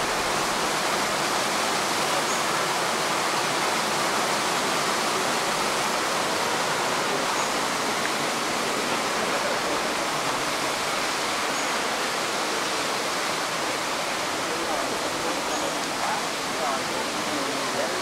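Waterfall: a steady rush of falling water that comes up to full level at the start and holds unbroken.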